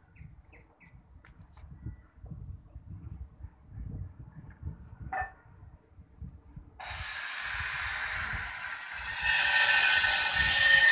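Wind rumbling on the microphone, then a steady hiss that starts suddenly about seven seconds in and grows much louder about two seconds later.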